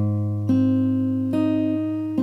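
Acoustic guitar fingerpicked slowly on an A-flat chord: a low A-flat root on the low E string rings on while higher notes on the G and B strings are plucked one at a time, about one a second, each fading slowly.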